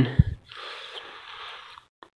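The end of a man's spoken word, then a breath close to the microphone lasting about a second and a half, which cuts off suddenly near the end.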